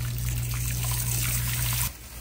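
Water running through hair and splashing into a salon shampoo bowl as the hair is rinsed and squeezed, over a steady low hum. It stops abruptly near the end.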